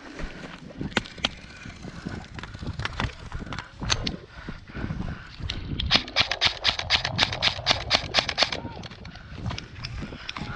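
Footfalls and rattling kit of a person running through dry grass carrying an airsoft rifle and gear, with scattered clicks and knocks. About halfway through, a fast, even string of sharp clicks runs for about three seconds, roughly eight a second.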